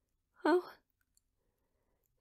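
A woman's voice saying a short, breathy "Oh," about half a second in, then silence.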